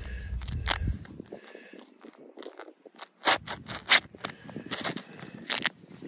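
Stretched black plastic silage bale wrap crackling and scraping as a hand rubs an adhesive silage patch down over a hole to seal it. The sound comes as irregular sharp crackles, loudest in the second half.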